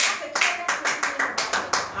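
Quick, even hand clapping, about six claps a second.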